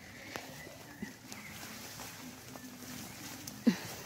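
Quiet outdoor ambience of footsteps through wet garden plants, with a few faint high chirps and a brief voice sound near the end.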